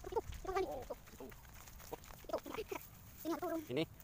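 Short snatches of faint voices, three brief bursts a second or so apart.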